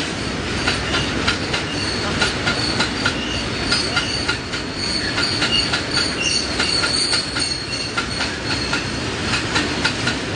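Iron ore wagons of a long freight train rolling past, their wheels clacking over the rail joints in a steady rhythm. A high wheel squeal joins in about four seconds in and holds for several seconds.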